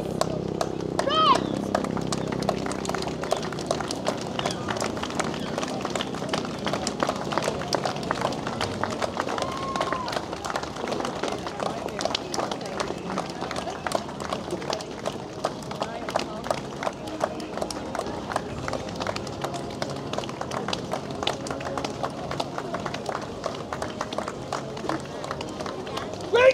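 Many boots of a marching column tramping on a wet road, a dense, steady stream of footfalls, with spectators talking in the background.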